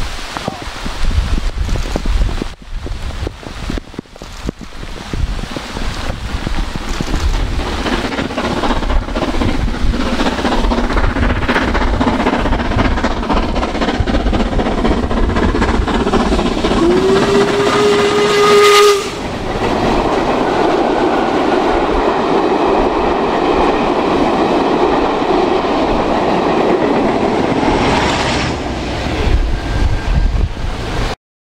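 LMS Stanier Black Five 4-6-0 steam locomotive 44871 working hard up a long bank, its noise building as it approaches, with wind buffeting the microphone at first. Just past halfway it blows its whistle, a note that rises briefly and then holds for about two seconds. The train then passes close by with a steady rush of noise.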